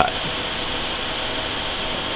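Steady background hiss with no distinct event; the scalpel cut makes no sound that can be picked out.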